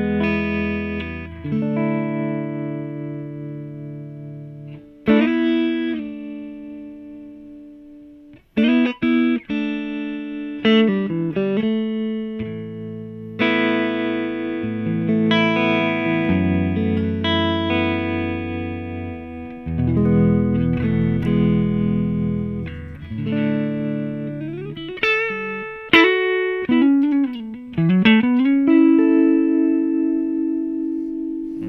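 Clean Fender Stratocaster electric guitar played through a JHS Kodiak tremolo pedal on its sine wave into a Fender '65 Twin Reverb amp. Chords are struck and left to ring and fade, with quicker strums and phrases in the middle and sliding notes near the end. The volume undulates gently; the effect sounds shallow because the pedal's mix is set low.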